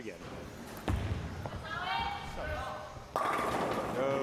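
A bowling ball drops onto the lane with a thud about a second in, rolls down it, and crashes into the pins a little after three seconds in, the pins clattering on through the end: a strike.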